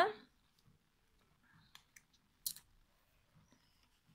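Very quiet room with a few small, sharp clicks near the middle, the last and loudest about two and a half seconds in, after a spoken word trails off at the start.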